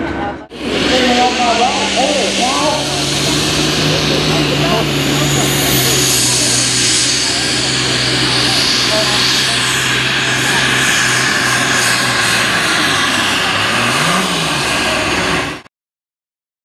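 Diesel engine of an Allis-Chalmers pulling tractor running flat out under load as it drags the weight-transfer sled, a loud steady drone. Near the end the revs drop, flare briefly and fall away.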